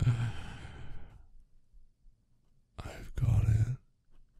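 A man's deep voice sighing twice: a breathy sigh at the start, then a second, shorter voiced sigh near the end.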